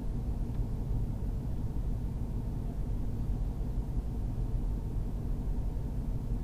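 Jeep Grand Cherokee Trackhawk's supercharged 6.2-litre V8 running steadily, heard as an even low rumble inside the cabin.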